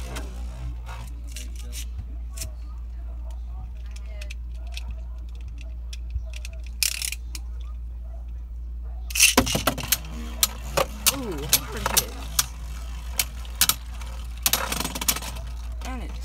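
Beyblade spinning tops in a blue plastic stadium: from about nine seconds in, a quick run of sharp clicks and knocks as the tops strike each other and the plastic wall and rattle to a stop.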